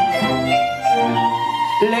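Chamber string orchestra of violins and cellos playing a sustained accompaniment. A man's singing voice comes in near the end.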